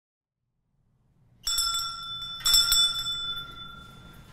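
A small, high-pitched church bell struck twice, about a second apart, each strike ringing on and fading, marking the start of the Mass.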